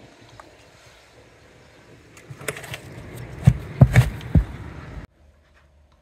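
Outdoor background noise with a string of knocks and low thumps that grows busier and louder past the middle, three heavy thumps close together the loudest. It then cuts off suddenly to near silence about five seconds in.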